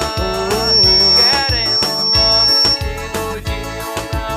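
Live pisadinha-style forró music: an electronic keyboard melody over a steady beat, with a thin high tone held for about two seconds near the middle.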